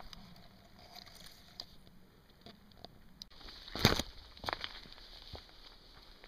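Handling noise on a handheld camera being turned around: a few knocks and rubs on the microphone, the loudest about four seconds in and another soon after, over faint outdoor background.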